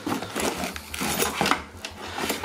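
Hands rummaging in a molded paper-pulp packaging insert: cardboard and plastic rustling and scraping, with several small knocks, as a power cord is pulled out.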